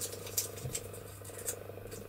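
A small folded slip of paper being unfolded by hand: a few faint crinkles and rustles, over a steady low hum.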